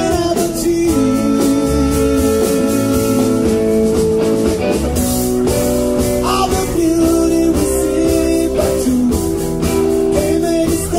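Live soul-blues band playing: electric guitar, bass and drums under long held chords, with a man singing into the microphone.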